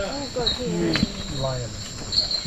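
Rainforest night insects chirping: short high chirps repeating over a steady high trill, with people talking quietly underneath.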